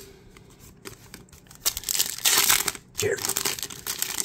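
Plastic-foil trading-card pack wrapper crinkling as it is handled and torn open, in a dense burst about two seconds in and again near the end.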